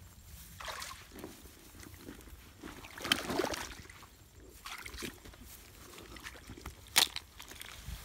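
Rustling of rice stalks and wet squelching of mud as someone digs by hand into a mud hole, in irregular bursts, the loudest about three seconds in, with a sharp click about seven seconds in.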